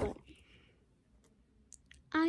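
A girl's word trailing off, then near silence with a couple of faint, short clicks near the end.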